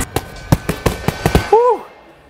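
A rapid flurry of about seven gloved punches smacking into Thai pads in little more than a second, followed by a short rising-and-falling groan from the puncher.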